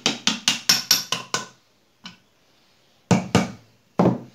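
Plastic-faced mallet tapping the aluminium crankcase of a Bajaj CT 100 engine to work the split case halves apart. A quick run of about seven sharp taps comes in the first second and a half, then two louder knocks about three seconds in.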